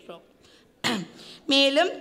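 A woman clears her throat once into a podium microphone, a short sudden rasp about a second in, after a brief pause in her speech.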